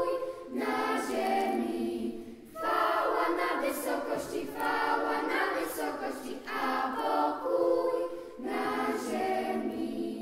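Children's choir singing a Polish Christmas carol a cappella, in sung phrases with short breaks between them.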